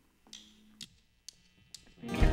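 Near silence with a few faint clicks and a brief faint low hum, about a second long, in the first half.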